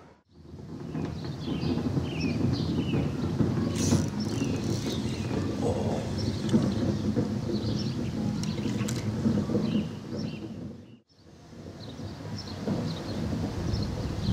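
Wind rumbling on the microphone outdoors, an uneven low noise, with faint bird chirps above it. The sound drops almost to nothing just after the start and again about eleven seconds in.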